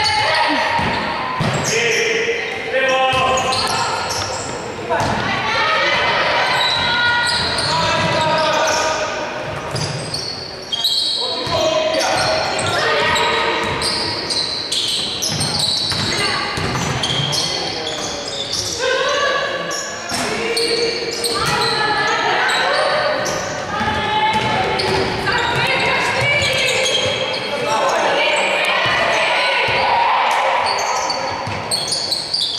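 A basketball bouncing on a wooden gym floor during play, with voices calling out, echoing in a large sports hall.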